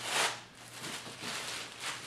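Plastic sheeting rustling and crinkling as a heavy clay block is moved on it, with a louder burst of rustle at the start and quieter handling noise after.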